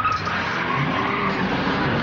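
A car skidding, its tyres squealing over the engine.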